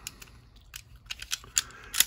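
Light metallic clicks of a Llama Especial .380 pistol's slide stop being worked into the frame and slide during reassembly. The clicks come as a handful of irregular ticks.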